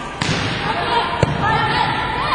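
A volleyball struck once with a single sharp smack about a second in, over players' voices calling out.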